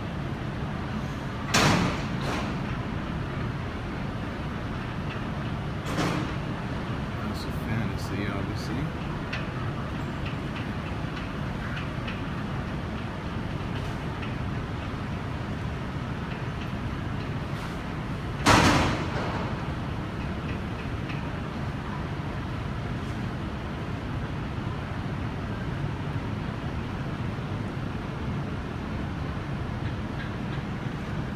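Steady low rumble of background noise, with a loud knock about two seconds in, a smaller one a few seconds later and another loud knock just past the middle; faint voices in the background.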